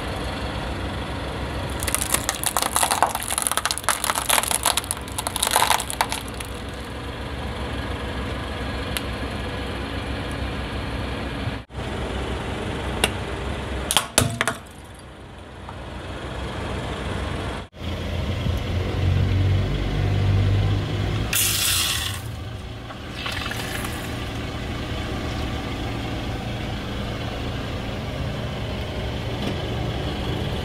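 A car tyre rolling over brittle plastic objects, crushing them with a run of crackling and snapping about two to six seconds in, and more sharp snaps around fourteen seconds. Later the car's engine runs steadily, with a short hiss partway through.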